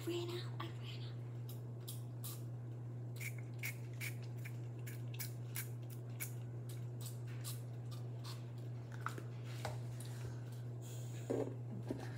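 Sour spray candy bottle pumped again and again into a small plastic cup: many quick, short hissing squirts in a row, over a steady low hum.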